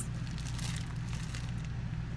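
Thin plastic bread bag crinkling as a bag of sesame-seed hamburger buns is handled and lifted, over a steady low hum.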